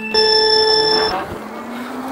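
An electronic race-start beep, one steady high tone lasting about a second, then a faint rising electric-motor whine as the e-bike and electric go-kart pull away.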